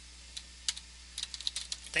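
Typing on a computer keyboard: two separate keystrokes in the first second, then a quick run of taps in the second half.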